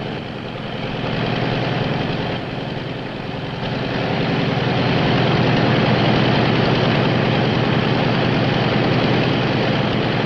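Radial piston engines of a twin-engine propeller airliner running on the ground, a dense throbbing drone. It swells about a second in, eases briefly, then grows louder from about four seconds in as the engines are run up.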